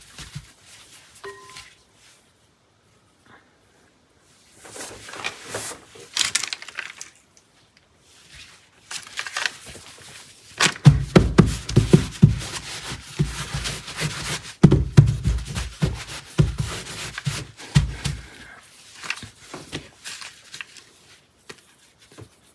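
Hands pressing and rubbing a folded terry towel down onto wet paper on a table to blot the water out: soft rubbing that starts a few seconds in, with a run of dull thuds in the middle as the palms press down.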